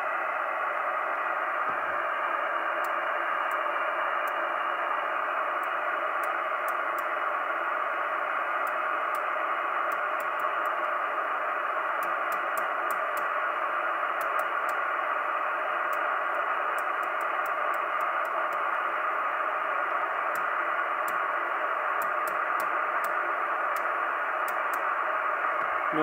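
Cybernet Beta 1000 FM CB radio's speaker giving steady, even receiver hiss with the squelch open: no station is heard on any channel. Faint scattered clicks come as the channel switch is turned.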